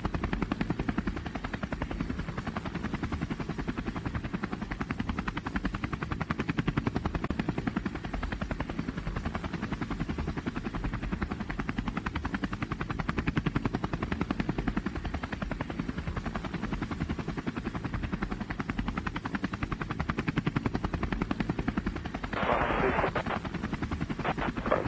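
DJI Phantom quadcopter's propellers and motors in flight, picked up by the onboard camera as a steady, fast buzz with wind buffeting.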